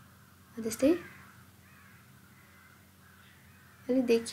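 Mostly a pause in a woman's narration: one short spoken syllable about a second in, then faint steady room hum until she speaks again at the very end.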